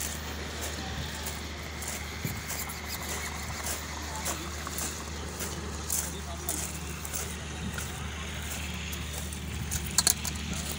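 Outdoor work-site ambience: a steady low rumble with faint background voices of workers and scattered small clicks and knocks.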